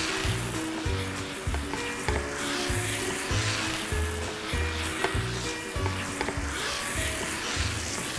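Minced pork and fermented fish paste (prahok) sizzling steadily in a frying pan as they are stirred with a wooden spatula. Background music with a regular low beat plays along.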